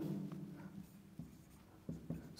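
Marker pen writing on a whiteboard: a few faint, short strokes.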